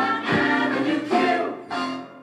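Background music: a song with singing over a beat.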